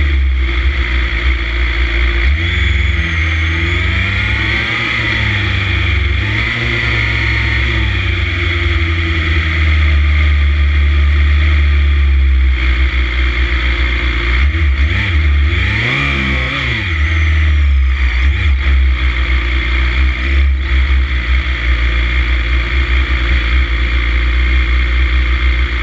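Racing motorcycle engines idling close on board, with the pitch rising and falling in several blips of revving, about three seconds in, again around six seconds and again around fifteen seconds.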